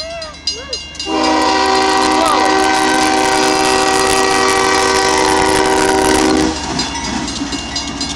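Diesel freight locomotive's air horn sounding one long, loud chord of several steady tones for about five seconds at close range, starting about a second in and stopping abruptly. Under it the crossing's signal bell rings at a few strokes a second, and after the horn the locomotive rumbles past the crossing.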